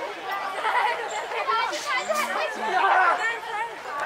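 Several male voices talking over one another: the overlapping chatter of a group of people.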